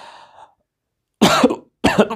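A man coughing twice in quick succession, the first cough about a second in and the second just before the end.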